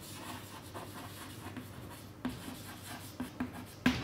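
Chalk scratching on a chalkboard as a word is written out by hand, with a few light taps of the chalk and a sharper tap just before the end.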